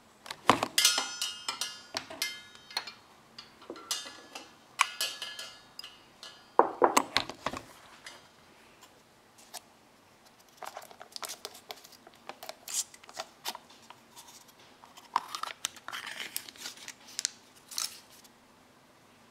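Irregular bursts of crinkling and clicking from packaging being handled by hand, with quiet gaps between them. In the last few seconds the foil lid of a small plastic yogurt cup is peeled back.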